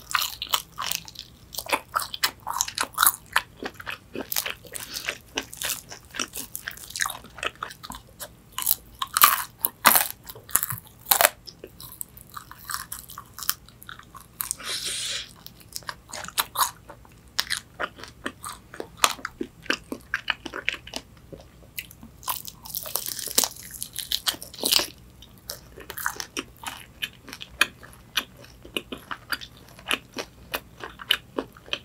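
Crispy fried chicken wings being bitten and chewed: many sharp crunches of the fried batter, with chewing between bites.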